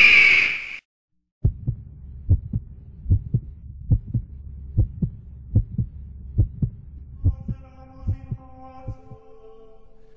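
Heartbeat sound in a music mix: paired low thumps, one pair about every 0.8 seconds, fading out near the end. Soft held drone tones come in about seven seconds in, after a loud stretch of the previous music is cut off just under a second in.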